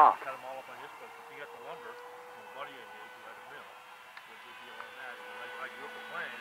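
Faint, indistinct background conversation of people talking, under a steady high-pitched hum.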